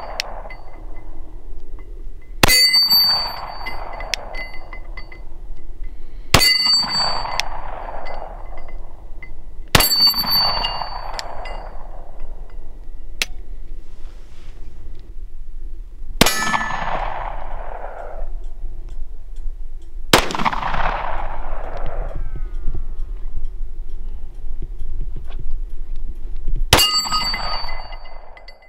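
Six 9mm pistol shots from a Glock 19, fired singly a few seconds apart. Most are followed by the ringing ding of a steel target plate being hit, and each has a short echoing tail.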